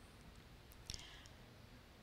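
Near silence: room tone in a pause of speech, with one faint click about a second in.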